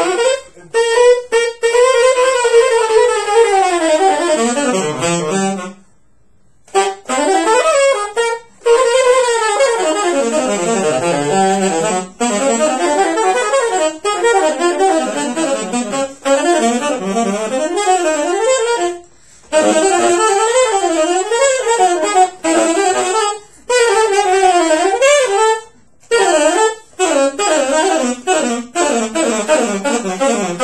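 Saxophone playing fast double-time jazz lines in several phrases with short breaks between them, the runs winding up and down. They are demonstrations of lengthening a line with false fingerings and added chromatic notes.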